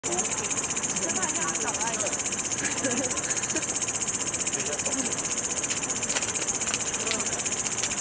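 Night insects, crickets or similar, trilling in a steady, high, rapidly pulsing chorus, with faint distant voices underneath.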